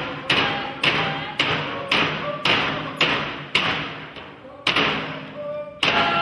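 Large Alaska Native frame drums struck in a steady beat, about two strikes a second, with group singing over them.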